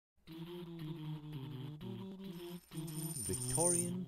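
Intro jingle of held notes that step from one pitch to another, with a short break just before the middle. Near the end a voice comes in with gliding pitch, leading into the spoken show name.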